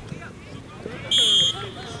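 A referee's whistle: one short, shrill, steady blast about a second in, over faint shouting from the field and sideline.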